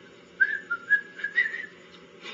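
A person whistling a short run of quick notes that step up and down in pitch, starting about half a second in.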